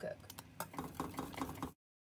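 Wire whisk beating egg yolks into a hot, thickened cornstarch mixture in a stainless steel saucepan, its wires ticking quickly and lightly against the pan. The sound cuts off abruptly near the end.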